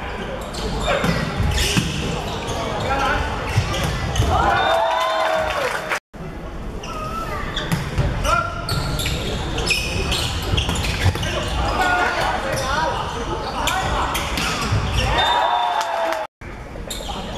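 Indoor volleyball play in an echoing sports hall: sharp slaps of the ball being hit and spiked, sneakers squeaking on the court, and players and spectators shouting. The sound cuts out for a moment about six seconds in, then the play sounds resume.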